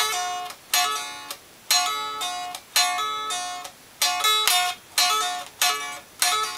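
Electric guitar playing a repeated lick: a two-string chord at the 7th fret of the 2nd and 3rd strings, picked about once a second, with a quick hammer-on to the 10th fret and a pull-off back on the 2nd string.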